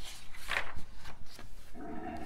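A page of a glossy picture book being turned by hand: paper rustling and swishing, with the loudest swish about half a second in.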